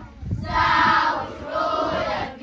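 A group of children singing together, in sung phrases with a short break right at the start, and a low bump just after it.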